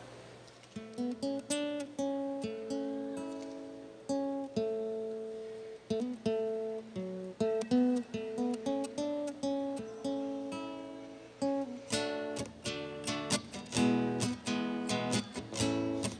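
Solo acoustic guitar playing a song introduction: picked notes and broken chords ringing out one by one, turning into faster, denser strumming about three-quarters of the way through.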